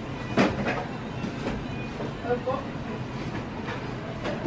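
Indoor shop background noise with faint, indistinct voices and a brief sharp click about half a second in.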